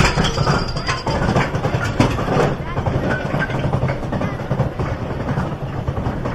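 Mine train roller coaster climbing its chain lift hill: a steady rattling rumble of the lift chain and cars, with repeated clicks and clanks.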